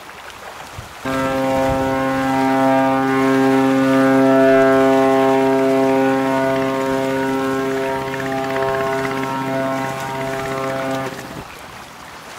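Container ship's horn sounding one long, steady blast of about ten seconds, starting and stopping abruptly.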